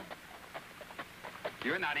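Horses' hooves clopping in a few irregular, faint knocks, over the steady low hum of an old film soundtrack. A voice starts speaking near the end.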